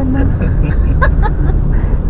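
Steady low rumble of a car's engine and tyres heard from inside the cabin while driving, with a brief voice at the start and again about a second in.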